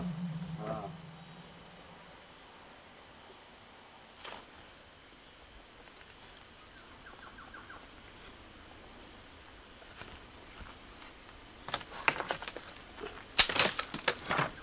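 Steady, high-pitched chorus of pulsing insect song. A short pitched cry comes just under a second in, and a few sharp rustling knocks come in the last two seconds, the loudest about a second and a half before the end.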